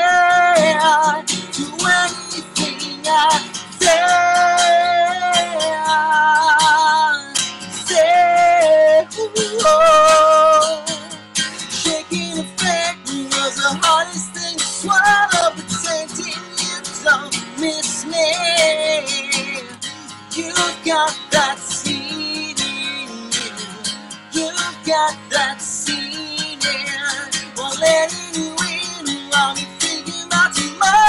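A man singing, with long held, wavering notes, over a strummed acoustic guitar.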